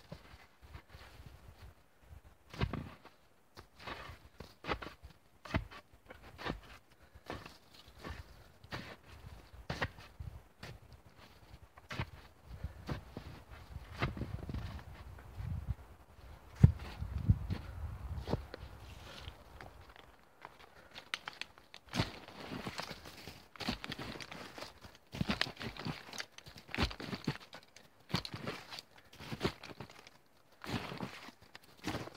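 Snow crunching and scraping in an irregular run of knocks as a long wooden stick is jabbed into the snow and boots tramp around, digging out a fire pit. A denser spell of deeper thuds comes around the middle.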